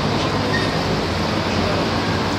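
Steady city background din: a continuous rumble and hiss of road traffic, with no single event standing out.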